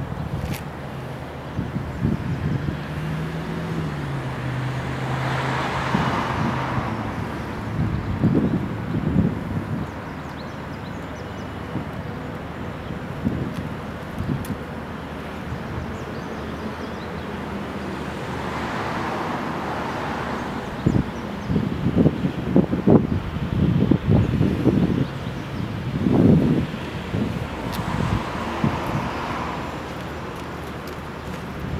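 Electric lift motor of a CH5065 portable scissor-lift platform running steadily as it slowly raises a folded power wheelchair. Wind buffets the microphone in gusts, loudest in the second half, and cars pass by now and then.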